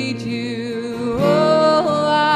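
Live worship band playing a slow song: a female vocalist singing long held notes over acoustic guitar, with a new note starting a little after a second in.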